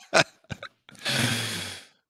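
A man's short laughing breaths, then a long breathy exhale like a sigh, about a second long.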